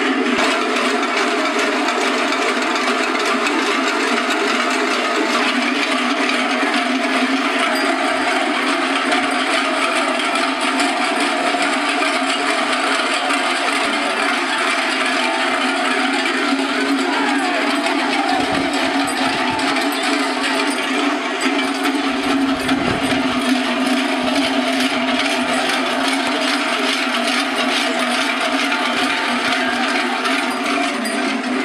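Many large cowbells (cencerros) clanging together in a dense, unbroken din, without let-up.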